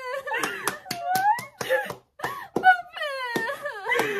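High, wavering sobbing voices of people crying with joy, broken by a dozen or so scattered hand claps.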